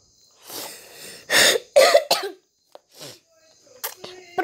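A person coughing in a short fit of several rough, noisy coughs, the loudest about a second and a half in, with a softer one near the end.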